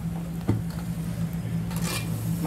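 Steel spoon stirring a watery masala gravy in a metal pot, with a single knock about half a second in and a short scrape near the end, over a steady low hum.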